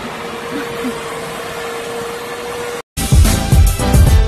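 Outdoor street background noise with a steady high hum running through it, cut off sharply nearly three seconds in. After a brief gap, music with a heavy, regular beat starts.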